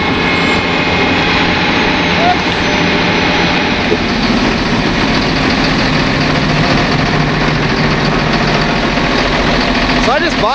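Gradall XL4100 wheeled excavator's engine running steadily at idle.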